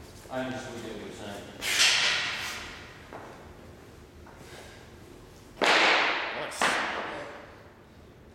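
Weightlifter's forceful hissing breaths as he drives a barbell from the rack overhead: a short voiced sound, a hissed breath about two seconds in, then two loud sharp exhales about a second apart near the end.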